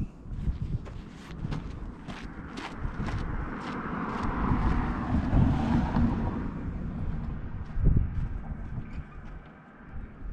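Wind buffeting the microphone, with footsteps and small clicks on dirt.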